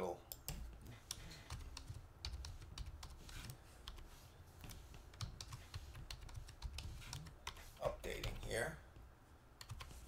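Typing on a computer keyboard: a run of irregular, fairly faint keystrokes.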